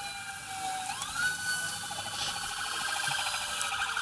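A police siren, faint against the narration's level, sounding as the rapid-response units move in. Its tone glides up about a second in and then holds high, with a fast pulsing beneath it.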